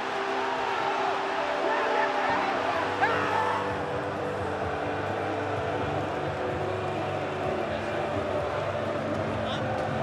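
Stadium crowd cheering and singing in celebration, over background music with held notes.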